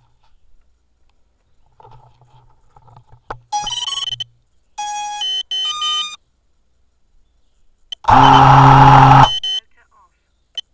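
Electronic tones: two short runs of clear beeps that step up and down in pitch, then a loud harsh buzz lasting just over a second near the end.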